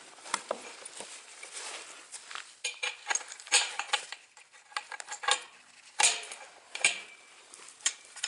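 Scattered metallic clinks and knocks, a few briefly ringing, as a wooden 2x4 handle is fitted onto steel EMT conduit and a carriage bolt with washer and nut is put in by hand. The sharpest knocks come about three and a half and six seconds in.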